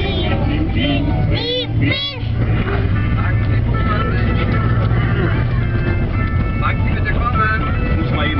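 Young children singing and vocalising inside a moving car, with a couple of high swooping notes about a second and a half in. The car's steady road and engine rumble runs underneath.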